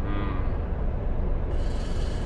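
Diesel truck engine idling, a steady low rumble heard inside the cab. A man's short low hum comes at the start, and a hiss comes in near the end.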